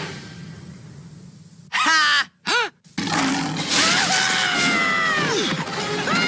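Cartoon yells: two short cries in quick succession about two seconds in, broken by moments of dead silence, then a long cry over a rush of noise that falls steeply in pitch near the end.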